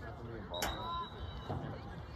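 Voices of spectators and players talking and calling out at an outdoor soccer game, with a single sharp knock a little over half a second in, followed by a brief thin high tone.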